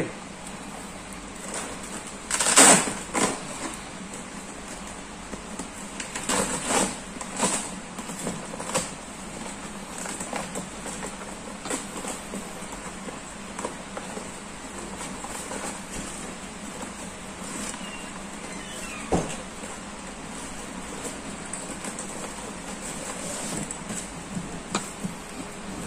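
A foil-lined polyester thermal delivery bag being handled: the fabric and foil lining rustle and crinkle, with scattered knocks as stiff PP boards are fitted inside. The loudest burst comes about two and a half seconds in.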